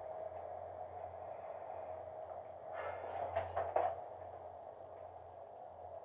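Steady low electrical hum inside the centrifuge gondola, with a few brief faint sounds about three seconds in.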